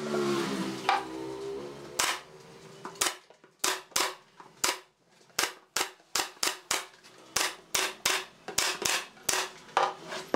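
Pneumatic nail gun firing about twenty times in quick succession, two to three shots a second, fastening a thin panel down onto a wooden box frame. Just before the shots begin there is a brief squeaky scrape as the panel is slid into place.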